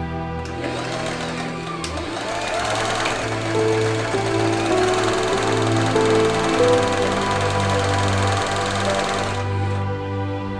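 An electric sewing machine stitching fabric, running steadily under background music and stopping near the end.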